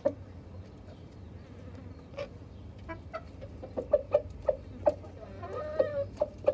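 Chickens clucking in short, sharp notes. The clucks are sparse at first and come more often from about four seconds in, with a longer wavering call near the end.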